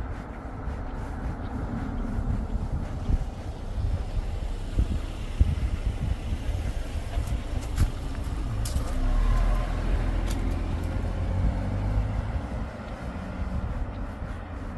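An SUV comes up from behind and passes close on a narrow paved path. Its engine and tyre rumble builds to its loudest about two-thirds of the way through, then eases as it drives on ahead. A few sharp clicks come in the middle.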